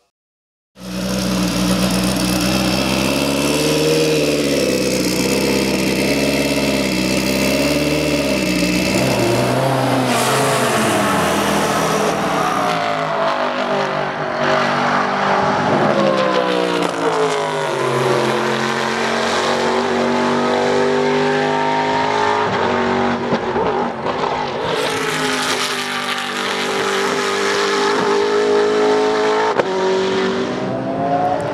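Race car engines at speed on a circuit, running loud. After a brief silence the engine note wavers, then falls away and climbs again in steps as the cars shift through the gears and accelerate.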